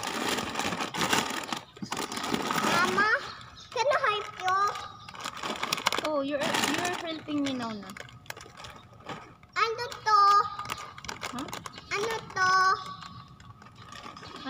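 A young child's high voice calling and babbling in short bursts, with plastic snack packets rustling and crinkling during the first few seconds.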